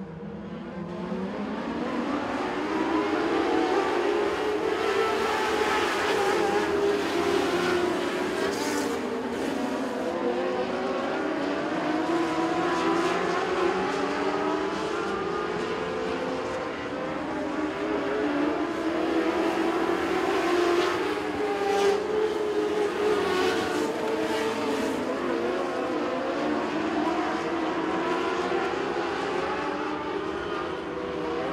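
A pack of Mod Lite dirt-track modified race cars at racing speed, several engines revving together and rising and falling in pitch as they go around the oval. The sound swells and climbs in pitch over the first couple of seconds, then stays loud.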